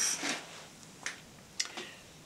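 A few faint, short clicks of small metal parts being handled: the screws and fittings of a body file holder turned in the fingers.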